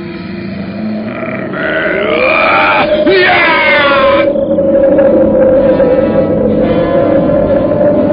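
A man's loud snorting and grunting. Its pitch slides up about two seconds in and sweeps down a second later, the sign of a fighter straining to summon his power. Under it a steady droning music note sets in and holds.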